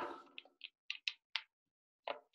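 Five short, sharp clicks about a quarter second apart, from someone clicking at a computer as the presentation slide is changed.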